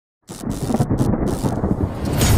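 Thunder-like rumble sound effect of a video intro: it starts suddenly about a quarter second in after silence and rolls on as a deep, noisy rumble.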